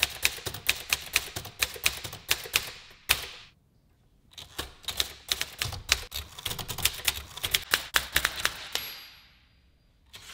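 Typewriter keys clacking as typebars strike the paper in quick runs of typing. The typing stops for about a second, around three and a half seconds in, then starts again and runs until just before the end.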